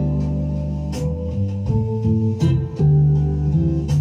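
Instrumental break in a slow acoustic pop song: plucked guitar over held bass notes, with no singing, played back through hi-fi bookshelf loudspeakers.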